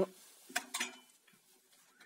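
A few short clicks and handling sounds as the angle grinder's switch is pressed, with no motor sound at all: the grinder is dead, which the owner takes for a broken wire.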